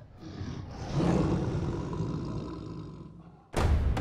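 A lion's roar: one long call that swells about a second in and then fades away. Near the end, drum-led music starts suddenly.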